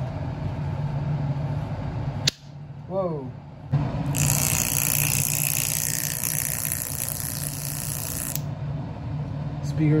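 Steady electrical hum with a sharp click a little over two seconds in. From about four seconds in, a small speaker driver wired straight to a power source gives off a loud, harsh hiss for about four seconds as it is overdriven.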